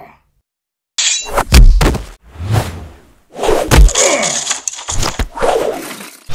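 Dubbed fight sound effects for a sword-and-claws brawl: a rapid run of hits and thuds beginning about a second in, the heaviest about one and a half and four seconds in, with a high metallic ring around four seconds in.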